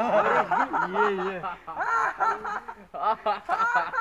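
Laughter: a voice snickering and chuckling in short broken bursts, with quicker chopped bursts near the end.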